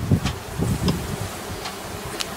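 Honey bees buzzing in a steady low hum around an opened hive, with a few faint clicks as the hive's cloth cover mat is handled.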